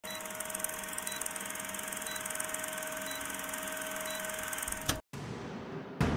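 Film projector sound effect under a film-leader countdown: a steady whir with a fast, even clatter and a short high beep once a second. It ends with a click about five seconds in, followed by a brief dropout and a quieter stretch.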